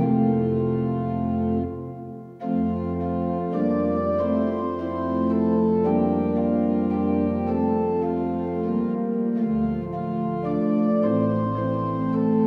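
Three-manual digital organ playing a slow prelude: sustained chords over a held pedal bass. About two seconds in the sound briefly dips almost away, then the chords come back in.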